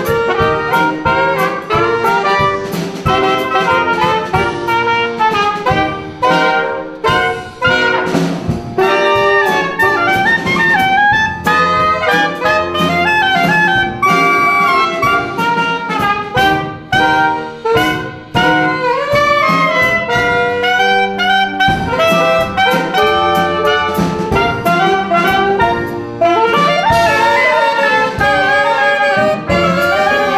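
A small jazz band playing a tune together: trumpet, saxophone and clarinet over a drum kit and keyboard, with steady drum and cymbal strikes under the horns.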